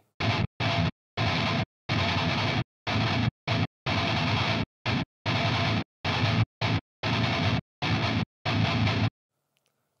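High-gain electric guitar playing a staccato metal rhythm riff through a noise gate plugin set very tight: each burst of chugging cuts off instantly to dead silence, extremely clean but not natural-sounding.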